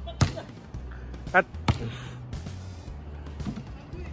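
A basketball hitting the hoop and bouncing on a concrete court: three sharp impacts in the first two seconds.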